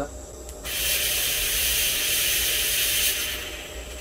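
Smoke machine firing a burst of fog: a loud hiss that starts suddenly about half a second in, holds for nearly three seconds and then tails off.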